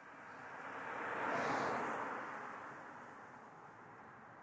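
A pass-by whoosh of noise that builds to a peak about one and a half seconds in, then fades away to a low hiss.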